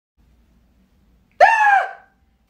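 A woman's short, high-pitched exclamation of surprise, starting about a second and a half in and trailing off quickly.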